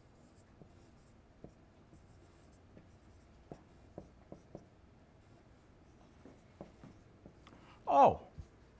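Dry-erase marker writing on a whiteboard: faint scattered taps and short strokes of the tip. A man's voice cuts in briefly at the very end.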